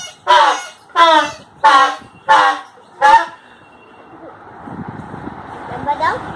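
Toy plastic party horns blown in a series of five short honks, each dropping in pitch, about one and a half a second. The honks stop about three seconds in, and a softer hiss and rustle follows.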